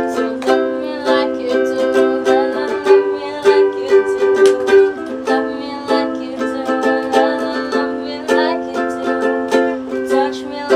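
Ukulele strummed in a steady rhythm, cycling through a chord progression with the chord changing every two to three seconds.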